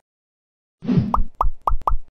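Animated end-card sound effects: after a moment of silence, a whoosh with a low thud, then four quick pops in a row, about a quarter second apart.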